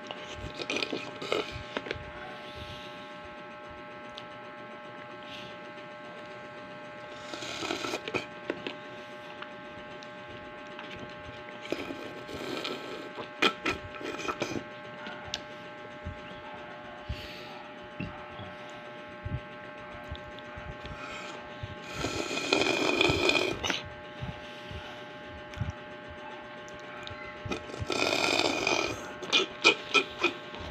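Mouth sounds of a man drinking milk tea and chewing tapioca pearls from a plastic cup. They come in four bursts of a second or two each, over a steady hum.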